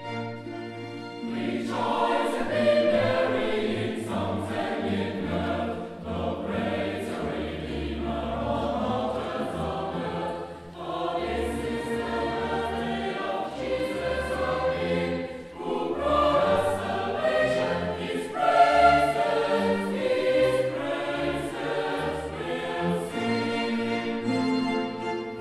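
Mixed choir singing with orchestral accompaniment. A held orchestral chord gives way, about a second in, to the full choir, which sings in phrases with brief breaks between them.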